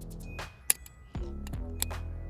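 Toyota Tacoma smart key fob's plastic shell snapping open with one sharp click about a third of the way in, and a fainter click near the end, over soft background music.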